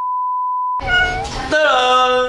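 A steady electronic test-tone beep lasting about a second, cut off suddenly. A short high-pitched call follows, then a man's long, drawn-out vocal call.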